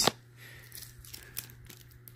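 Faint, scattered crinkling and crackling of thin clear plastic screen-protector film being handled, over a low steady hum.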